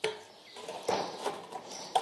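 Hand tin snips cutting thin colour-steel roof flashing: a sharp snip as the blades close at the start, then a few smaller crisp snips as the cut runs along the sheet.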